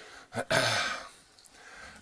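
A man briefly clearing his throat, a short rasping burst about half a second in.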